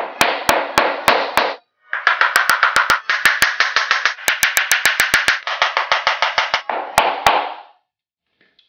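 Small hammer striking the hard toe box of a Russian Pointe shoe in repeated blows. The blows come about three a second at first, then a faster run of about six a second, then two last blows near the end. The hammering softens the box and tip so the shoe makes less tapping noise on the floor.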